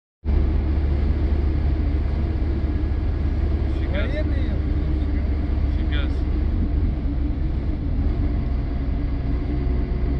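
Steady low rumble of a truck column on the move, with short bursts of voices about four and six seconds in.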